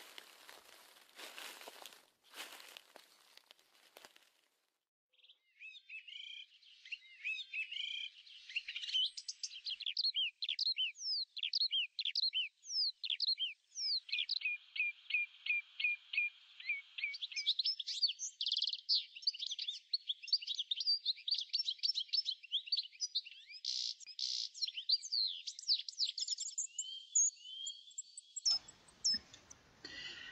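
Footsteps rustling and crackling through dry leaf litter for the first few seconds, then small songbirds chirping and singing continuously: many quick, high whistled notes rising and falling in pitch.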